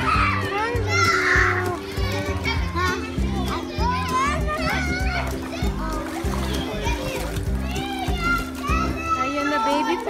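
Background music with a steady, repeating bass line and high, child-like voices over it. A brief splash of water comes about a second in.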